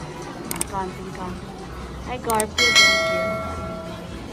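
Sound effect of a subscribe-button animation: two quick mouse clicks, then a bright notification-bell ding that rings on and slowly fades.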